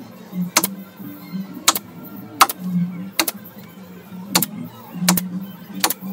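Pneumatic upholstery staple gun firing seven sharp shots, irregularly about one every three-quarters of a second, as it drives staples along the edge of the upholstery.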